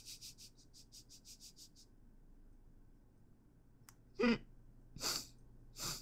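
A man's stifled, near-silent laughter: a quick run of breathy puffs through the nose, about five a second, then a short hummed 'mm' and two more breathy snorts.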